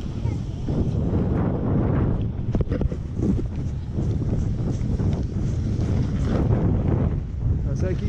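Wind buffeting the microphone, a dense, steady low rumble, mixed with the scrape of a snowboard sliding over snow. A voice comes in right at the end.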